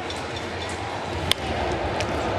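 Ballpark crowd noise with one sharp crack of a bat on a baseball about a second and a half in, as a pitch is lined hard back toward the mound.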